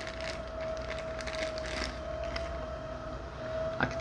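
Engine noise from a passing noisy truck: a steady whine held on one pitch over a low rumble. Light rustling of a plastic parts bag being opened sits on top.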